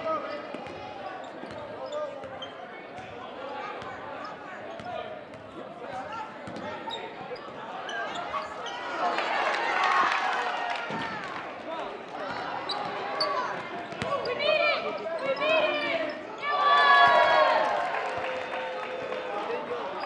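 Sounds of a basketball game in a gym: a ball bouncing on the hardwood court, sneakers squeaking, and voices of players and spectators calling out. The voices swell about ten seconds in and are loudest a few seconds before the end.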